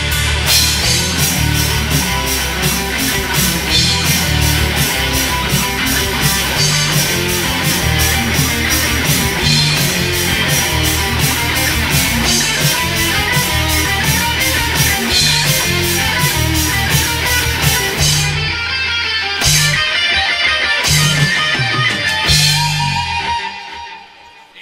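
Live rock band playing an instrumental passage: electric guitars, bass and drums with a fast steady cymbal beat. In the last few seconds the band plays a few stop-start accents and then stops together.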